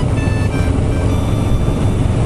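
Kawasaki Ninja 650 parallel-twin engine running at road speed under a steady, loud rush of wind on the microphone, with faint background music over it.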